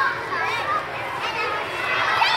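Many young children chattering and calling out at once: a steady hubbub of overlapping high voices.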